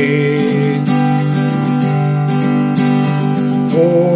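Acoustic guitar strummed steadily in chords. A man's sung note is held over it for the first second, and his singing starts again near the end.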